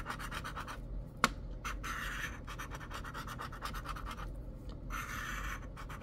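A large metal coin scratching the coating off a paper scratch-off lottery ticket in rapid strokes, with short pauses about a second in and again past the middle. There is a single sharp click about a second in.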